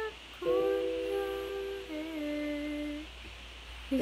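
A woman humming a slow melody in long held notes, with the pitch shifting once about halfway through. The humming breaks off about three seconds in.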